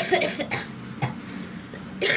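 One short, hard cough lasting about half a second, followed by a faint click about a second in.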